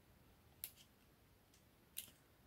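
Near silence with two faint, short clicks about a second and a half apart, from paper and card pieces being handled and pressed together during card assembly.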